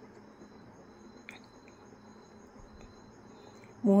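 Faint sizzle of hot oil with mustard seeds in an aluminium kadhai, with a thin steady high-pitched whine over it and one small pop about a second in.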